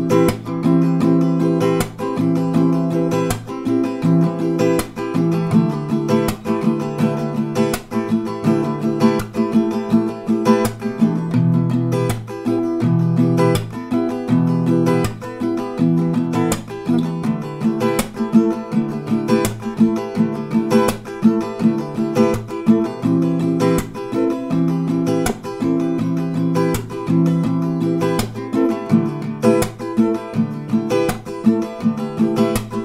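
Acoustic guitar strummed in a steady down-up pattern with a percussive clap on the strings in each bar, cycling through A minor, G, F and G chords.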